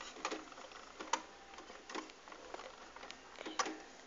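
Light, scattered clicks and taps of small plastic toy pieces being handled, about seven in all at uneven intervals.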